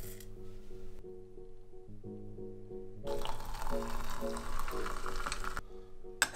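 Background music throughout. About halfway through, water is poured into a glass teapot's steel infuser, a steady splashing pour of about two and a half seconds that stops just before the end.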